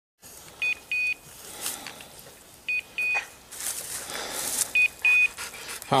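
Electronic beeper collar on a hunting dog giving a high double beep, a short tone then a longer one, three times about two seconds apart. Some scuffling noise comes between the beeps.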